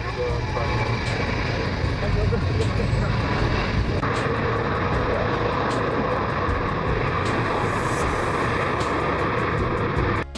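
Xian Y-20 four-engine jet transport on its landing roll with spoilers raised, its turbofan engines running with a steady rumble and whine that grows a little brighter about four seconds in.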